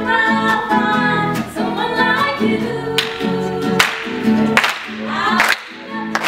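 Singing over a strummed acoustic guitar in a steady rhythm, with a brief drop in level just before the end.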